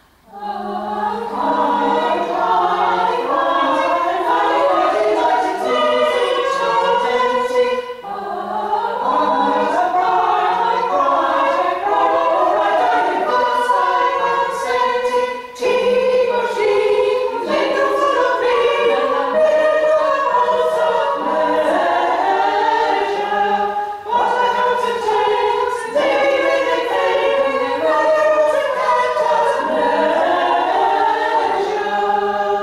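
Women's a cappella choir singing unaccompanied in several parts, with short breaks between phrases about a quarter, half and three quarters of the way through.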